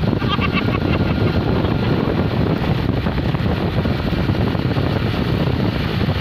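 Steady low rumble of a small vehicle's engine and road noise while riding, mixed with wind buffeting the microphone.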